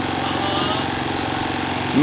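A small engine running steadily, an even low drone with no change in pitch.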